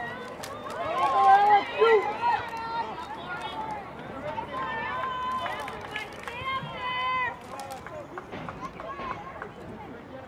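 Several high-pitched voices of spectators and players shouting and calling out during a soccer attack on goal. The shouts are loudest between about one and two seconds in, with more calls from about five to seven seconds. A few short sharp knocks come among them.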